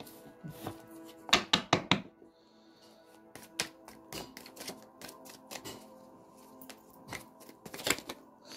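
A deck of tarot cards being shuffled by hand: quick slaps and riffles of the cards, loudest in a cluster about a second and a half in, then a scattered run of lighter clicks through the rest. Soft background music plays underneath.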